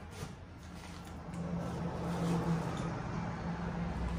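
A steady low machine hum that grows louder about a second in.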